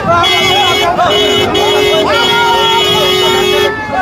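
Vehicle horn honking four times, three short honks and then one long honk of about a second and a half, over a crowd's voices.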